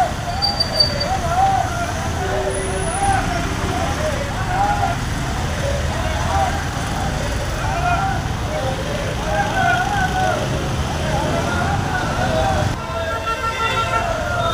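Voices of a walking group of pilgrims calling out over a steady street rumble of traffic, with a brief horn-like tone near the end.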